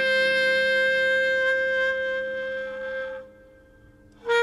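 Background music: a single long held note on a wind instrument, rich in overtones, that fades out about three seconds in.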